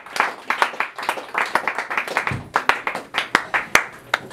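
Audience clapping, the individual claps sharp and distinct rather than a dense roar.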